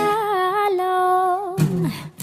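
Acoustic cover song: a singer holds one long note with a wavering pitch over acoustic guitar, and a fresh guitar strum comes in about a second and a half in.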